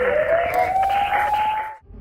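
News-programme transition sting: a siren-like wail rising steadily in pitch over a noisy musical bed. It cuts off abruptly just before the two-second mark.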